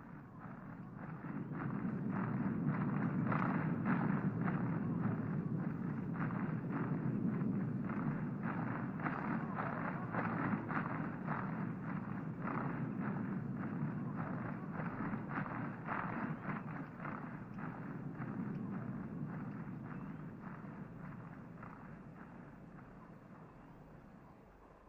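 A distant massed beat from an approaching Zulu army: a low rumble under a steady rhythm of about two to three strikes a second, like a chain rattling in the distance. It swells over the first couple of seconds and slowly fades toward the end.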